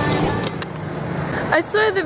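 Music fades out early on, leaving a steady hum of city street traffic; a woman starts talking about one and a half seconds in.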